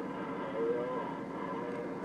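A steady hum and hiss inside a car, with a brief faint hummed tone about half a second in.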